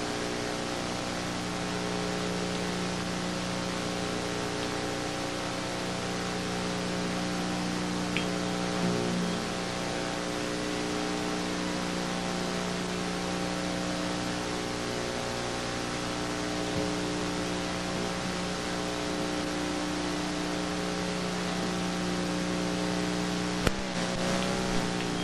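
Steady electrical hum from the stage amplification under constant tape hiss, with no playing: the idle gap between songs on a 1987 live tape recording. There is one faint tick about eight seconds in.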